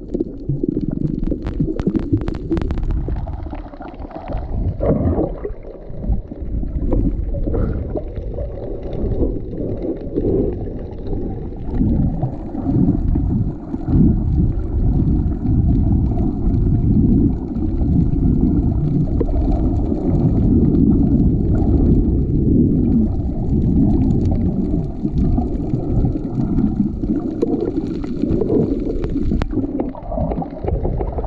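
Muffled underwater rumbling and gurgling of moving water picked up by a submerged camera, surging unevenly. A few sharp clicks come in the first few seconds.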